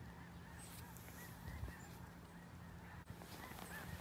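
A distant flock of snow geese and Canada geese honking faintly, with many small calls overlapping throughout.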